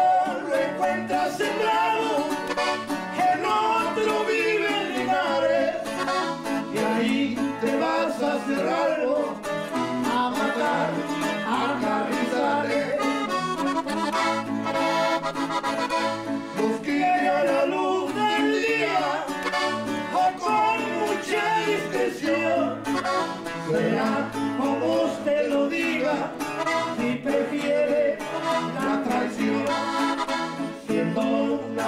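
A norteño corrido performed live: accordion and bajo sexto with a steady bass-and-strum rhythm, under two men singing Spanish verses together.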